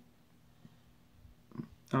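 Near silence: room tone in a pause between words, then a short breath and a man's drawn-out 'um' starting just before the end.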